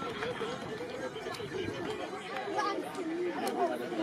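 Several men's voices talking over one another in close, overlapping chatter, with a few faint sharp clicks.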